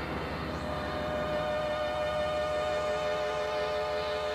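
Korg synthesizer playing an eerie, siren-like held chord of many steady tones. A bright higher tone swells in under a second in, over a fast low pulsing throb, with faint rising sweeps.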